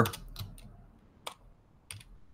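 A handful of separate keystrokes on a computer keyboard, spaced out with short pauses between them.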